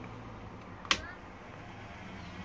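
A single sharp click about a second in, over a steady low hum of air conditioning.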